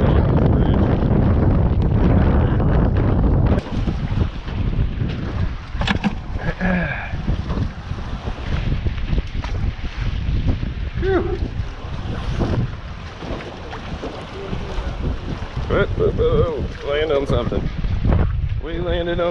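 Strong wind buffeting the microphone, a heavy low rumble that drops off suddenly about three and a half seconds in. After that, lighter wind over choppy water, with a few brief faint voices.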